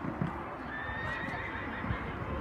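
A horse whinnies once, a wavering call of about a second, over the dull thud of hooves cantering on a sand arena.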